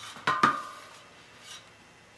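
Two sharp metal clinks a fraction of a second apart, the second one ringing briefly, as metal parts are handled at a spoked motorcycle wheel's hub. After them comes quiet handling with one faint tick.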